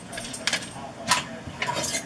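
A few light clicks and clinks of kitchen items being handled on a counter.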